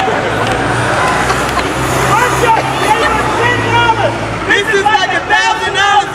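A heavy vehicle's engine running with a low steady drone, dying away about four and a half seconds in, under the babble and calls of a crowd of people.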